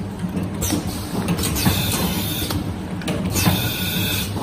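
A paper can sealing machine line running: a steady motor and conveyor hum with mechanical clatter, and short knocks about once a second as the machine works through the cans.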